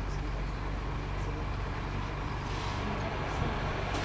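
Steady low hum and rumble inside a train carriage standing still, with a hiss building near the end.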